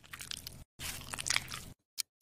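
Close-up crackly, squishy sound of thick cream squeezed out of a plastic tube onto skin, in two stretches with a short break between them, stopping shortly before the end.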